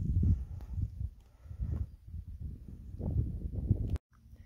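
Footsteps on dry ground and handling of a hand-held camera: irregular low thumps and rumbling on the microphone, about one every half second to a second.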